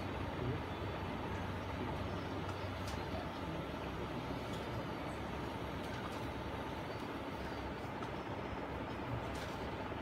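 Steady background noise with a low hum and a few faint clicks; no playing or singing.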